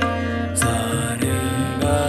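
Tabla playing teen taal at about 100 beats a minute, a stroke roughly every 0.6 s, over a steady drone on A# with held melodic notes. A new set of sustained notes comes in near the end.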